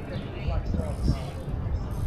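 Indistinct chatter of several people talking nearby, over a steady low rumble of outdoor ambience.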